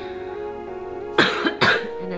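A woman coughs twice in quick succession, about a second in, over steady background music; she is sick.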